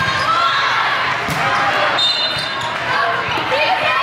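Volleyball match in a gym: many players' and spectators' voices calling out over each other, with sharp thumps of the ball being struck.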